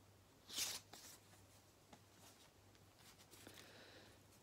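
Quiet handling of a paper record sleeve and a 7-inch vinyl single: one brief papery swish about half a second in, then a few faint light clicks, over a steady low hum.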